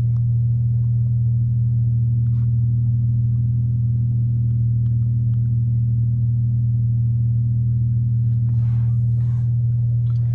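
2015 Dodge Charger idling, heard inside the cabin as a steady low hum, with a few faint handling clicks and rustles near the end.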